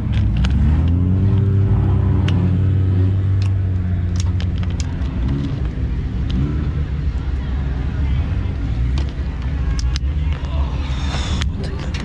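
Engines of other race cars running past on the track, their pitch rising and falling as they go by, with scattered sharp clicks and knocks close by.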